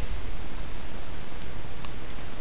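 Steady hiss of a recording microphone's noise floor, with a faint tick near the end.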